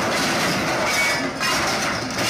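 Heavy truck trailer and its large tank load toppling over, giving a steady rumbling, clattering noise of straining and grinding metal.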